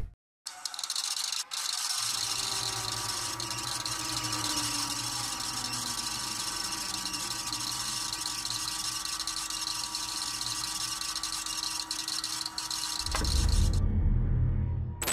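A steady whirring, hissing machine-like sound effect with a faint tone that slowly falls in pitch. In the last second a deep rumbling swell comes in.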